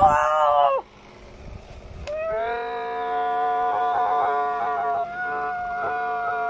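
A child's voice holding a long, steady, high note: a short one that cuts off just before a second in, then after a pause another held note of about four seconds that runs on past the end.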